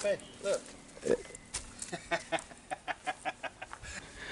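A man laughing in a quick run of short, evenly spaced bursts, after a couple of brief exclamations.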